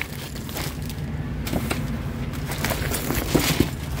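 Plastic wrapping crinkling and rustling in scattered short bursts as a plastic-bagged item is handled in a cardboard box, over a steady low hum.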